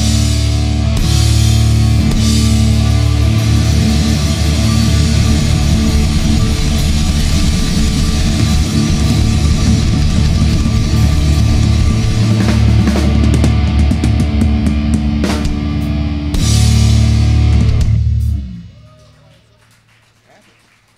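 Punk rock band playing live: distorted electric guitars, bass guitar and drum kit with cymbals, loud and steady. The song ends near the end, the sound dying away over about a second.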